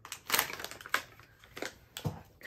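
A plastic blind-bag packet torn open by hand, with the figural keychain pulled out: a few short rips and crinkles, the loudest about a third of a second in.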